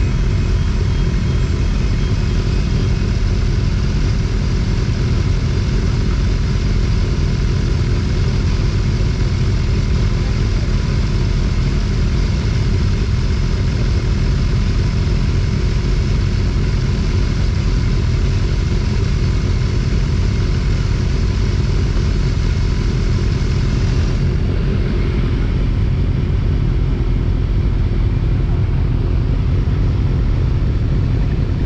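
Steady low rumble of motorcycles idling in a waiting queue, mixed with wind buffeting on the microphone; the higher sounds thin out about three-quarters of the way through.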